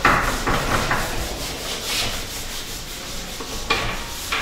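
A handheld sponge eraser scrubbing marker off a whiteboard in quick back-and-forth strokes. The strongest stroke comes right at the start, with another sharp one near the end.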